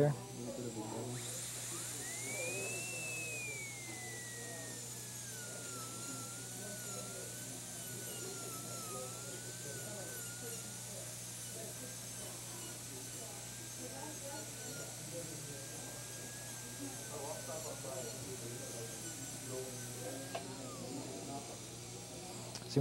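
Slow-speed dental handpiece run dry at low RPM with light pressure, its whine rising to a peak about two seconds in. It then settles lower and wavers for most of the stretch, over an airy hiss, and winds down near the end.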